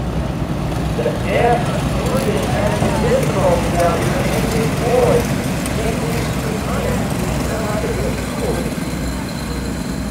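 Several go-kart engines racing together, their pitch rising and falling over and over as the karts speed up and back off.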